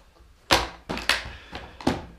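Small parts packed away in a plastic compartment organiser case and the case handled shut: four sharp plastic clacks, the first about half a second in and the loudest.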